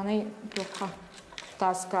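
Women speaking in short phrases, with brief pauses between them.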